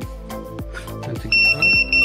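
A flight-controller buzzer on a freshly wired RC plane, sounding three short high-pitched beeps a little past halfway over background music, which shows that the electronics have powered up and the buzzer works.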